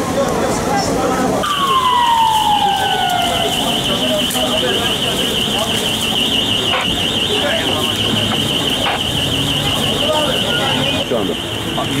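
Emergency vehicle siren sounding a fast, high warble that starts about a second and a half in and stops near the end, with a falling tone just as it begins, over background voices and commotion.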